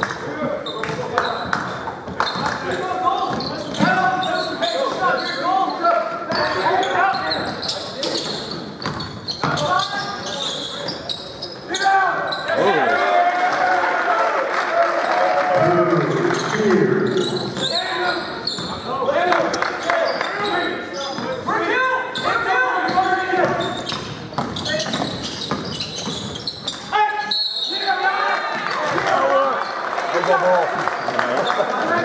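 Basketball being dribbled and bounced on a hardwood gym court during play, a run of short sharp bounces in a large gym, under people's voices.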